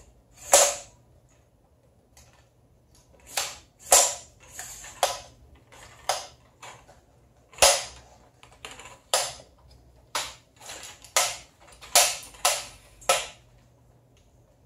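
Manfrotto MK190XPRO3 aluminium tripod's leg locks snapping open and shut and its leg sections sliding as the tripod is collapsed by hand: about a dozen sharp clicks at irregular intervals, with short scrapes between some of them.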